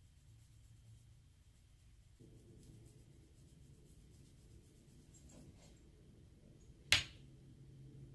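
Faint dabbing and scratching of an eyeshadow brush pressed through fishnet mesh onto the face, over a low steady hum that comes in about two seconds in. One sharp click about seven seconds in is the loudest sound.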